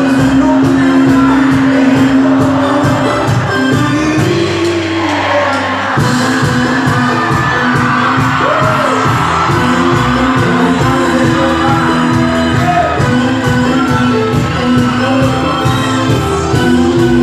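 Live band music with singing, played loud through the concert PA, with keyboards, a drum kit and hand percussion keeping a steady beat and crowd noise underneath. The bass and drums drop out for about two seconds, a quarter of the way in, then the full band comes back in.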